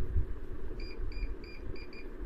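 About five short, high electronic beeps in quick succession, roughly three a second, starting about a second in. A low, steady rumble of background noise lies beneath them.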